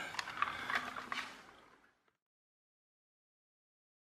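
A plastic toy car handled on a wooden floor: a few light clicks and rustles that fade out within about two seconds, followed by silence.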